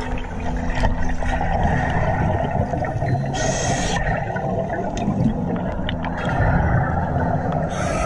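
Underwater recording of a scuba diver breathing hard through a regulator: a steady low bubbling rumble of exhaled air, with a brief hiss about three and a half seconds in and again near the end.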